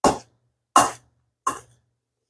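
Metal tongs tossing shredded cabbage and carrot salad in a stainless steel bowl: three short scraping rustles, about three-quarters of a second apart.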